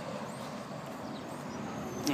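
Faint, steady outdoor background noise, a low even hiss with no distinct events.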